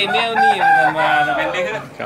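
A rooster crowing once, a single long call of about a second and a half that rises and then slowly falls away.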